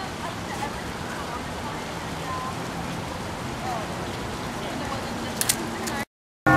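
Outdoor ambience in an open plaza: a steady noisy haze with faint, distant voices. Two sharp clicks come just before the end.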